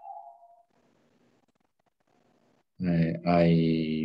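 Hesitant speech. After about two seconds of near silence, a voice draws out "I... I" in two held syllables.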